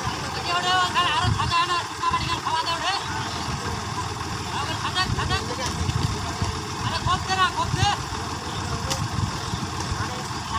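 Sonalika tractor's diesel engine idling steadily while the tractor sits stuck in the mud.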